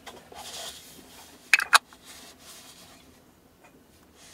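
Cotton-gloved hands handling a Sony SEL14TC teleconverter: soft rubbing of the gloves on the barrel, with a quick cluster of sharp clicks about a second and a half in.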